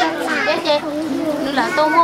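Speech: a group of women and children talking over one another.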